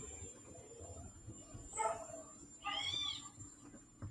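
Two short animal calls, the second longer, its pitch rising then falling, over faint background noise.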